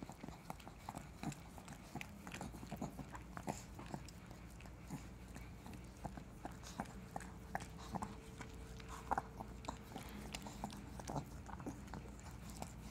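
A small dog licking a man's face and head right at the microphone: an irregular run of quick wet licking clicks, several a second.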